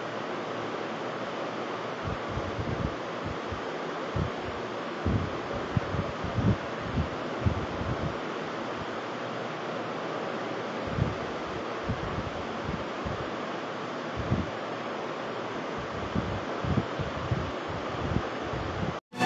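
Steady roadside noise of passing traffic, with wind buffeting the microphone in irregular low gusts.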